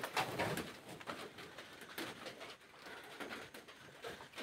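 Faint bird calls over low, uneven background noise.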